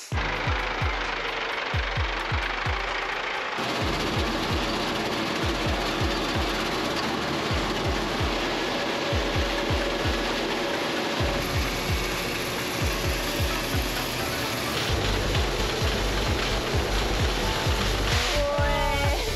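Tractor-drawn azuki bean threshing machinery running through the harvest, a steady dense clattering noise with repeated low thuds, changing abruptly a few times. Background music plays along with it.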